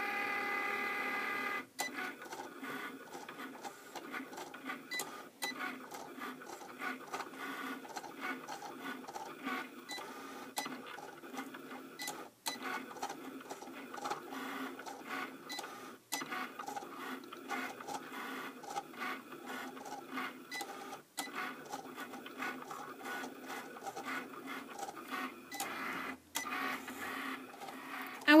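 Cricut Explore cutting machine at work, drawing with the pen in its accessory clamp: its carriage and roller motors whir in quick, irregular moves with frequent short stops and clicks. The first second and a half is a steady, even whine.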